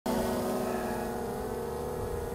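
Autel Evo quadcopter's propellers humming steadily in flight, fading slightly as it moves off.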